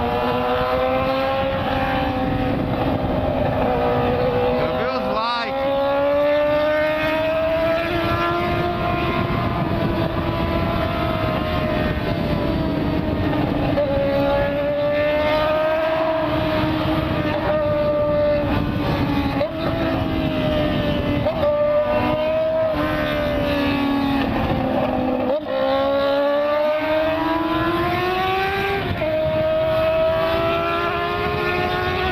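Yamaha FZ6's 600 cc inline-four engine pulling at highway speed, its pitch slowly rising and falling with the throttle, with brief drops about five, nineteen and twenty-five seconds in, over steady wind noise.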